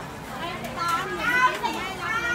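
Children's high-pitched voices calling out, over low background chatter.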